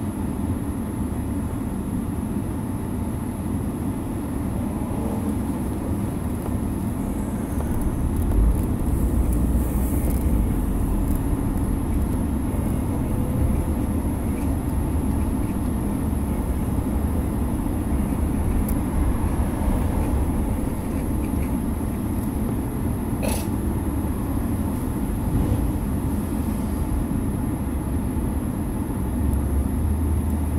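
Car cabin noise: a steady low rumble from the car, heavier from about eight seconds in, with a single sharp click a little past the middle.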